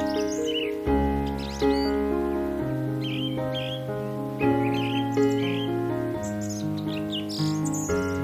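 Background music of slow, held chords that change every second or two, with repeated short bird chirps over it.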